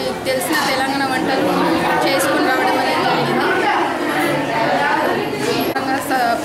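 Speech: a woman talking, with the chatter of many other voices behind her.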